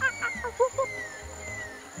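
Soft background music with animal-like calls over it: a few short chirping notes at the start, then slow falling whistles.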